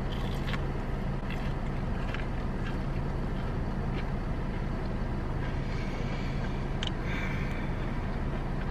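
Steady low hum of a car's engine idling, heard inside the cabin, with a few faint crunches of someone biting and chewing a fried chicken tender.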